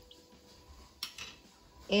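A single sharp click about a second in, then a smaller one: a plastic measuring spoon knocking as a tablespoon of sugar is tipped into the bread machine's pan.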